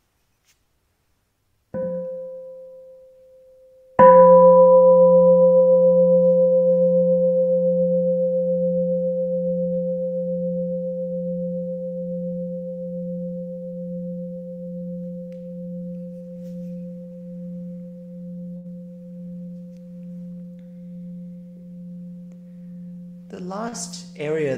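Meditation bell sounded twice: a light first stroke that dies away within about a second, then a full stroke about two seconds later that rings long and slowly fades with a gentle wavering hum. The light stroke wakes the bell before the full sound is invited, in the Plum Village way.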